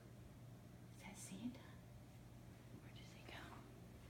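Near silence, with faint whispering twice: about a second in and again about three seconds in.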